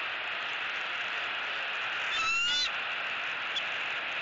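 A bird's single short call, a little over half a second long and rising slightly in pitch, about two seconds in, over a steady background hiss.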